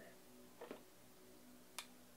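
Near silence, broken by a faint soft rustle-like sound just under a second in and one sharp click near the end.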